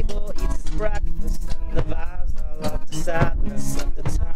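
Live acoustic pop band playing an instrumental passage: strummed acoustic guitars, upright bass and drums, with a hand shaker keeping time over them.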